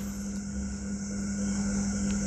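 Steady low hum with a faint hiss above it, the background noise of the room between words.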